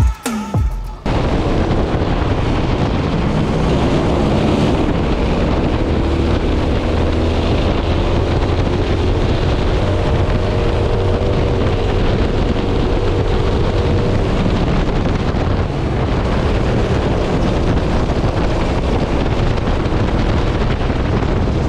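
Twin-engine ProKart racing kart at speed, heard from onboard: the engines' note climbs and falls as it is driven, under heavy wind noise on the microphone. A snatch of music cuts off about a second in.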